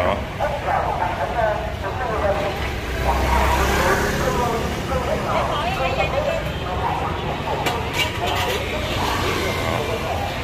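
Busy street ambience: background talk from people nearby over the low rumble of motor traffic, which swells about three to four seconds in. A few sharp clicks come about eight seconds in.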